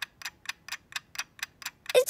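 Kitchen timer ticking steadily, about four sharp ticks a second, as it counts down to its ping.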